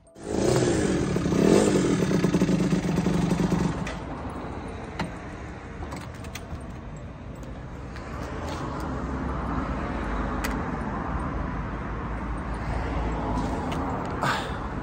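Yamaha sport motorcycle engine running loudly and revving for the first few seconds, then idling more quietly, with a few light clicks.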